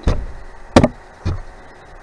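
Two sharp knocks about half a second apart, the first the louder.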